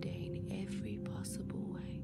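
Soft ambient background music of several steady held tones, with a faint whispering voice over it.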